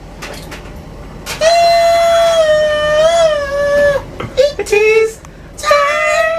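A man's voice singing or wailing without words: after a quiet first second with faint clicks, one long held note with a slight waver in pitch, then a few short notes near the end.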